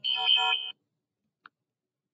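A short electronic tone, a little under a second long, with a steady high pitch that starts and stops abruptly, followed by a faint single click near the middle.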